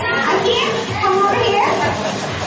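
High-pitched voices talking and calling out excitedly, their pitch swooping up and down, with no clear words.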